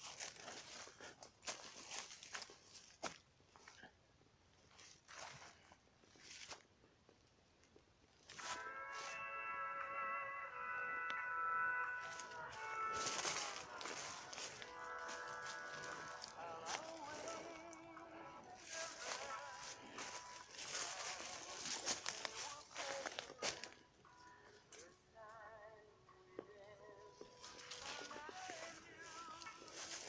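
Footsteps crunching on dry leaf litter. From about eight seconds in, music with held notes, later wavering, plays over the steps, with a short gap a little after twenty seconds.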